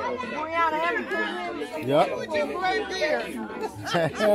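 Only speech: people chatting casually in conversation.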